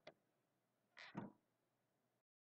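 Near silence broken by faint ticks of a marker on paper: a tiny click at the start, then a couple of soft taps and a scrape about a second in as the final full stop is dotted and the marker lifts off.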